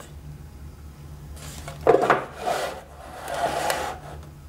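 A rigid watch presentation box being pulled apart and opened by hand: rubbing and sliding of its parts, with a knock about two seconds in as a piece is set down on a wooden table.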